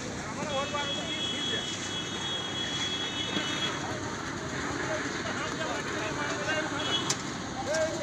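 Steady outdoor background noise with faint distant voices; a thin high tone sounds for about three seconds starting half a second in.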